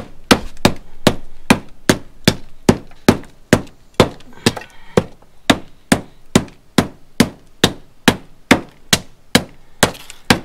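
A hammer striking in quick, even blows, about three a second, chipping brittle old dried tar off copper flashing.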